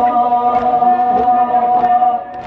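A man chanting a Kashmiri noha (Shia mourning lament) through a microphone, holding one long steady note. Faint sharp slaps come about every half second, the chest-beating (matam) that keeps time with the lament.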